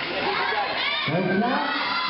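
Crowd of basketball spectators shouting and cheering, many voices at once, with more voices joining about a second in.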